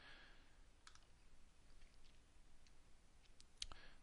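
Near silence with a few faint, sharp computer mouse clicks scattered over low room hiss.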